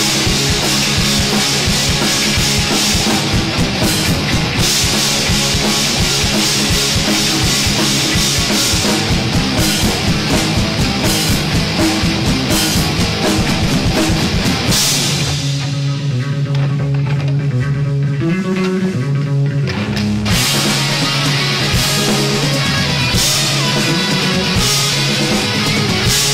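Live rock band playing an instrumental passage on electric guitars, bass guitar and drum kit. About fifteen seconds in, the cymbals and drums drop back for about five seconds, leaving guitar and bass, and then the full band comes back in.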